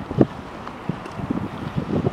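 Wind buffeting the camera's microphone: irregular low rumbles, with one stronger gust shortly after the start.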